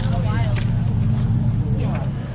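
A car engine idling steadily with a low, even hum, under the voices of people talking nearby.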